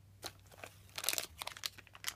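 Foil Shopkins blind bags being handled, crinkling in a run of short crackles that is densest about a second in.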